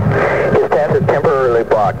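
Speech only: a voice reading a recorded telephone announcement, sounding thin and radio-like.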